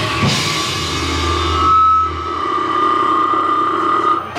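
A live death-metal band's final chord ringing out: the fast drumming stops right at the start, leaving a held, high sustained guitar tone over a low bass note that dies away about two and a half seconds in.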